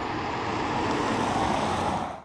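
Lexus ES 300h saloon driving past, a steady rush of tyre and wind noise that grows a little louder and then cuts off suddenly.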